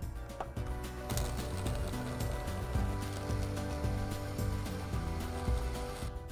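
An electronic wood-testing drill runs steadily as its needle bores through a wooden utility pole to measure the pole's diameter, starting about half a second in. Background music plays along with it.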